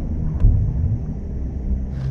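Low rumble with one deep boom about half a second in.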